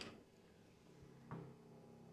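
Near silence with faint room tone, broken by a single faint tap about a second and a half in, as a colored pencil is handled at the coloring page.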